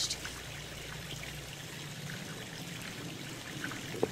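Shallow water trickling steadily over rounded river rocks in a lined backyard stream.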